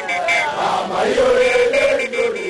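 Voices chanting together on a held, wavering note, with a steady high whine underneath that drops out for a moment in the middle.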